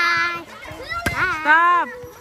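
High-pitched voices shouting during a volleyball rally: two loud, drawn-out calls, the first at the start and the second from about a second in, with a single sharp smack just before the second call.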